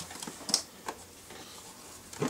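A few light, sharp clicks and taps from handling, the clearest about half a second in, over a faint low hum.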